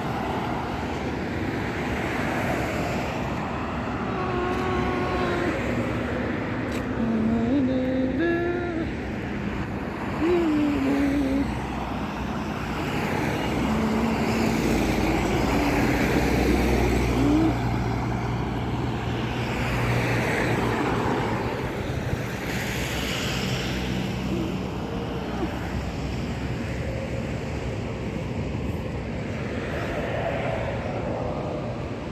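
Steady engine and tyre noise of a moving vehicle on a highway, heard from inside it, with a deeper rumble swelling briefly around the middle. A few short voices come and go in the first half.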